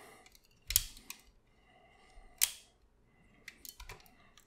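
Plastic clicks and snaps from the joints and panels of a Transformers Masterpiece MP-44 Optimus Prime figure being worked by hand as its arm is folded in. Two sharper clicks come just under a second and about two and a half seconds in, with a few light ticks near the end.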